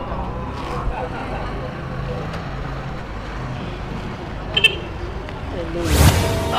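Outdoor street ambience: a steady hum of road traffic with faint distant voices. A brief high-pitched sound comes about four and a half seconds in, and a whoosh swells up at the very end.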